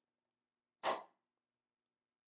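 A small vortex air cannon made from a plastic cup with a balloon stretched over its end is fired once: the pulled-back balloon is let go, giving a single short whoosh about a second in that starts sharply and fades quickly.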